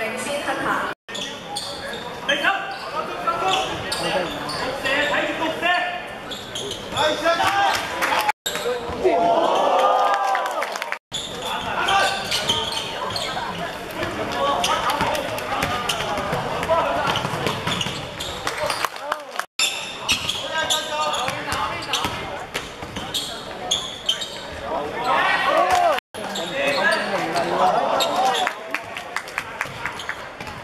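Basketball being dribbled and bounced on a hardwood court, with players' and spectators' voices echoing in a large sports hall. The sound drops out briefly several times at edits.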